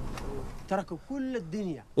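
A man's voice speaking quietly, low under the soundtrack, in a few short phrases through the second half.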